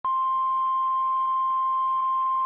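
NOAA Weather Radio warning alarm tone: one loud, steady, unbroken tone near 1 kHz (the 1050 Hz alert tone), which signals that a weather warning, here a severe thunderstorm warning, is about to be broadcast.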